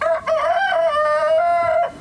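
Rooster crowing once: one long call of nearly two seconds with a short break near the start.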